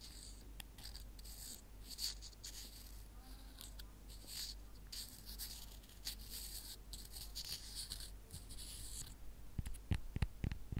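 Soft scratching and rubbing on a hidden object held close to the microphone, in a series of short hissy strokes; sharper taps begin near the end.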